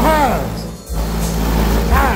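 A song played loud through a car audio system with subwoofers, its deep bass notes held steady under a swooping vocal or synth sound that rises and falls at the start and again near the end.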